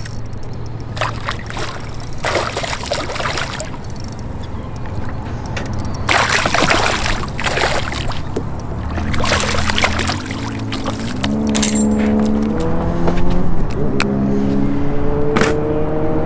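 A hooked smallmouth bass splashing at the surface beside a boat, in several bursts, over a low steady hum. In the second half a whine steps up in pitch several times.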